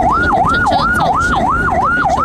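Emergency vehicle siren sounding a fast yelp, its pitch sweeping up and down about three times a second, over a low rumble of traffic.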